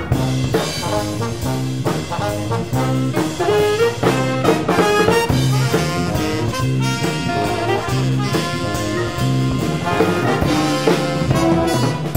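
Big jazz band playing a funk-inflected bebop tune live: the trumpet and trombone section plays short repeated ensemble hits over bass and drums.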